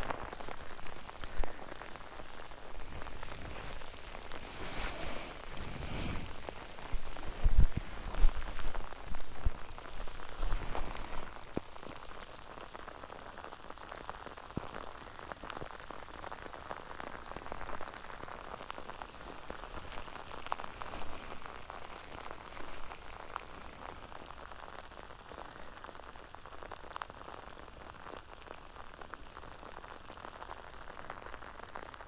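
Rain falling steadily in a dense, crackling patter, with louder bumps and rustles during the first ten seconds or so, after which the patter settles and continues more evenly.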